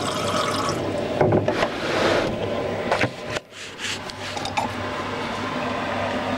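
Water being poured into a drinking glass, with a short break in the pour a little past halfway.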